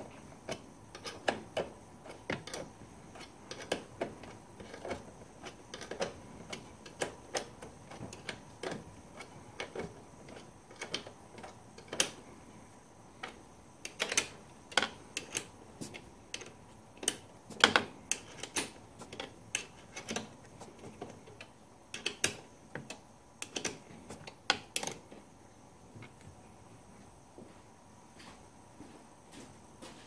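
Irregular sharp metallic clicks and clinks of a ring spanner being worked and refitted on a nut of an ATV's external gear selector linkage, busiest in the middle and dying away a few seconds before the end.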